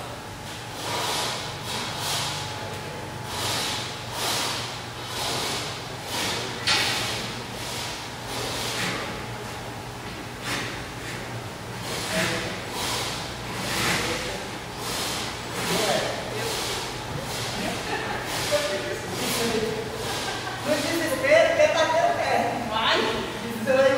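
Hard breathing of an athlete under exertion: a long run of forceful exhalations, about one a second, over a low steady hum.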